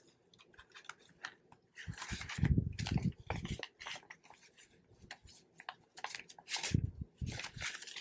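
Paper banknotes rustling and flicking as a stack of bills is fanned through and counted by hand, with crinkling of a plastic binder pocket. The handling comes in irregular clusters, loudest about two seconds in and again near the end, with a few soft thuds.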